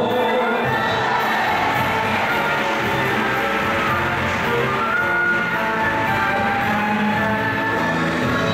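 A live band of violins, trumpets, trombones, electric guitar, drums and grand piano playing, with the audience cheering over the music.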